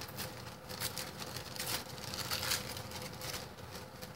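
Tissue paper rustling and crinkling as it is handled on a collage, in short irregular scratchy strokes.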